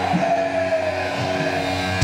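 Thrash metal band's electric guitars holding sustained, ringing tones over a cheering crowd in a live concert hall.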